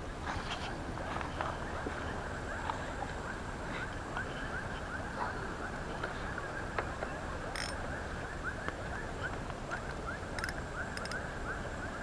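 Steady outdoor background noise beside a wide, flowing river, with faint chirps repeating all through it and a few sharp clicks in the second half.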